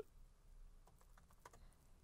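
Faint, irregular typing on a laptop keyboard, a scatter of soft key clicks, as a web search is typed in.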